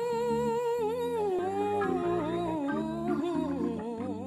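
Gospel music: a single voice holds a long wordless note with a slight waver, sliding lower after about two seconds, over keyboard chords repeated in an even rhythm.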